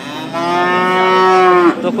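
A cow in a market pen mooing once: one long call of over a second that drops in pitch as it ends.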